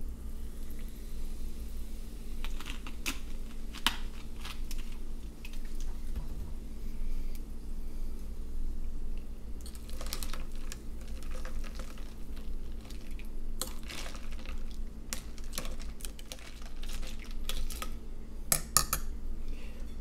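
Club soda poured from a plastic bottle into a glass of ice, then a long bar spoon stirring the drink, clinking now and then against the ice and glass. A steady low hum runs underneath.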